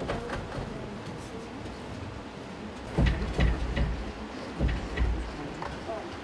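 Hand weaving at an upright kilim loom: light handling of the wool warp and weft, with a run of about half a dozen dull knocks, the loudest about halfway through.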